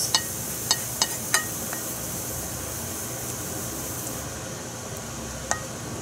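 Wooden spatula scraping sauce out of a frying pan into a ceramic gratin dish, the pan clinking lightly against the dish several times in the first two seconds and once more near the end, over a steady hiss that drops away about four seconds in.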